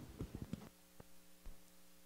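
Faint steady electrical mains hum, after a few soft taps fade out in the first half second; two soft clicks come about one and one and a half seconds in.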